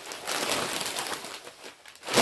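Plastic packaging crinkling and rustling as it is handled, in irregular crackly bursts.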